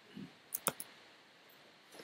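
Three quick, faint computer mouse clicks a little over half a second in, the first two close together like a double-click.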